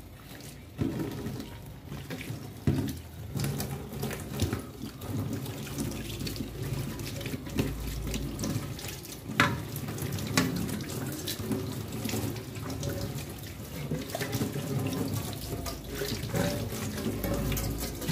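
Water from a kitchen tap running and splashing into a stainless-steel sink as an aluminium baking pan is scrubbed and rinsed by hand, with a few sharp knocks of the pan against the sink.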